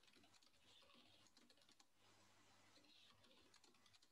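Faint typing on a computer keyboard: quick, irregular key clicks over a low steady hum.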